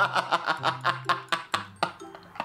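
A person laughing in quick, short bursts.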